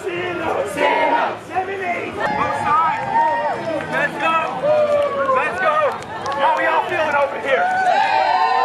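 Crowd of people, with many voices talking and calling out at once.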